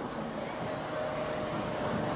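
Steady outdoor background noise with a faint steady hum running under it.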